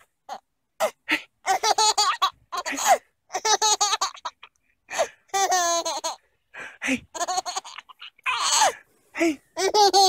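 Baby laughing in a string of short bouts with brief pauses between.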